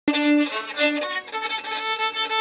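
Solo Czech-made violin strung with D'Addario Helicore strings, bowing a polka tune note by note, the notes changing every quarter to half second. The playing starts abruptly at the very beginning.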